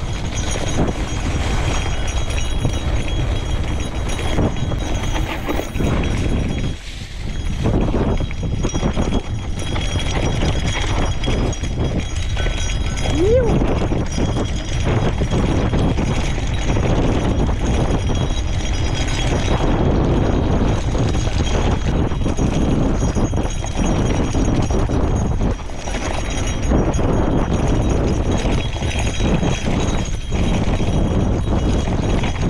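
Gravel bike rattling and clattering over a bumpy, narrow grass-lined singletrack, with steady wind rush on the microphone. A short rising squeak cuts through about halfway.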